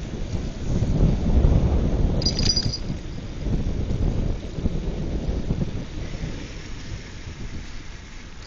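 Wind buffeting the microphone while riding along a street: a loud, uneven low rumble that eases off in the last couple of seconds, with one brief high squeak a little over two seconds in.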